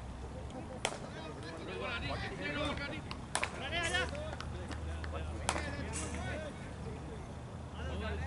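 Voices of cricket players talking and calling across an open field, with three sharp clicks about one, three and a half and five and a half seconds in. A low rumble sits under the voices in the second half.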